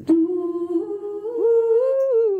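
A woman's voice humming one long, sustained "oooh" that steps up in pitch in stages, then slides back down at the end.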